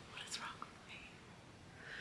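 A woman's quiet, breathy, near-silent laughter: soft airy exhales with a few small mouth clicks early on and an intake of breath near the end.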